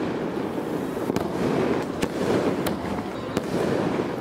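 Aerial fireworks bursting: a continuous rumbling crackle with sharp cracks about every 0.7 seconds.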